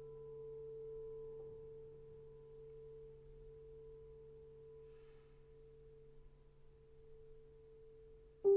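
Solo piano: a single held note, soft and almost pure in tone, slowly dying away.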